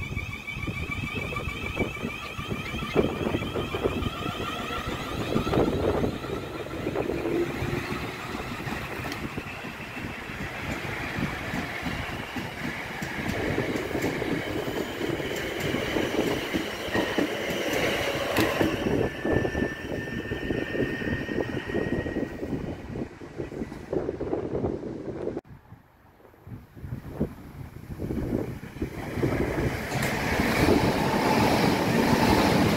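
South Western Railway Siemens Desiro electric trains at a station: a whine from the traction equipment over a steady rumble, then a train running through with wheels rumbling and clattering on the track. The sound cuts off suddenly about 25 seconds in, then builds again.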